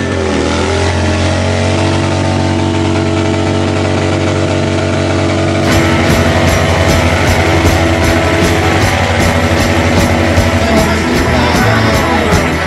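A motorcycle engine running, mixed with loud music. About halfway through the music changes and a steady, even beat sets in.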